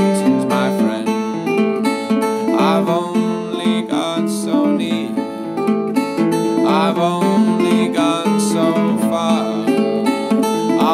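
Acoustic guitar strummed in a steady folk accompaniment, with a male voice singing over it at times.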